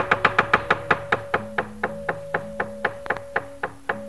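A wayang kulit dalang's keprak (bronze plates) and wooden cempala clattering in a rapid, even run of knocks, about six a second. Sustained gamelan notes sound beneath the knocks and shift in pitch twice.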